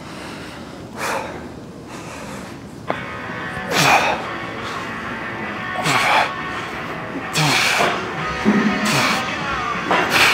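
A man's sharp, forceful exhalations as he presses heavy dumbbells on a bench, five in all, about one every one and a half to three seconds. Music begins about three seconds in and runs underneath.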